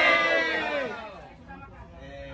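Voices in a crowd: a voice talking loudly during the first second, then fading to quieter talk and murmuring.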